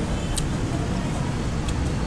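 Steady background noise of a busy eatery, a low rumble with one short click about half a second in.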